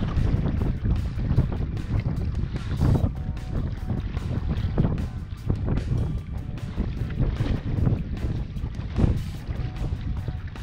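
Wind buffeting the microphone in uneven gusts over choppy sea water, under faint background music.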